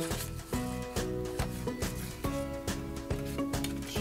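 Background instrumental music with a steady beat.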